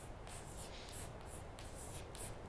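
Chalk drawing on a blackboard: a series of short, faint scratching strokes as boxes and connecting lines are drawn.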